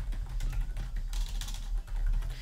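Typing on a computer keyboard: a quick, steady run of keystrokes, several clicks a second, as a short phrase is entered.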